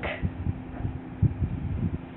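Ballpoint pen writing on paper laid on a bamboo mat, heard as a run of soft irregular low bumps as the strokes press through the page, over a steady low hum.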